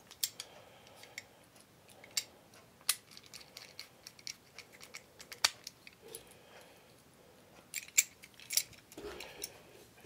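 Small irregular clicks and ticks of tiny screws and a magnetic screwdriver as the chassis of a 1/64 diecast truck is screwed back together, the sharpest click about halfway through.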